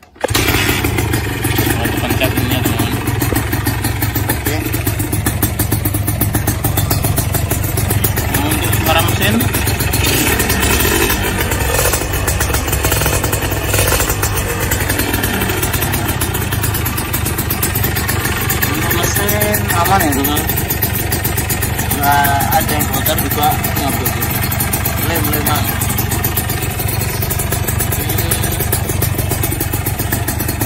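A 2001 Suzuki Satria RU 120's single-cylinder two-stroke engine catches just after the start, then runs at a steady idle.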